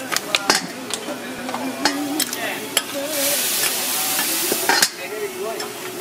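Water hitting a hot flat-top griddle, hissing and sizzling around razor clams, with many sharp metallic clicks. The hiss surges much louder for over a second about three seconds in. It ends with a sharp clack about five seconds in as a steel dome cover goes down over the clams to steam them.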